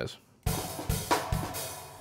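A programmed beat played back through Superior Drummer 2's sampled acoustic drum kit, starting about half a second in: a wash of cymbals and hi-hat over kick drum hits about every half second.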